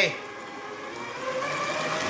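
Stand mixer running at speed, its wire whisk beating whipping cream in a stainless steel bowl: a steady motor hum.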